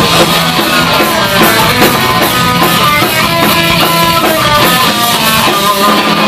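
Live punk rock band playing a loud instrumental passage: distorted electric guitars, bass and drums, with no vocals.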